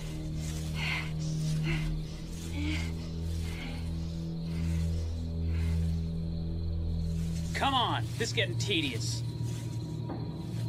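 Low, sustained drone of a suspense film score under a person's rhythmic breathing. About eight seconds in, a wordless voice rises and falls in pitch.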